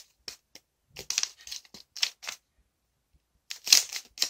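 A sheet of origami paper crinkling and rustling as it is folded and creased by hand, in a few short bursts with a pause before the loudest one near the end.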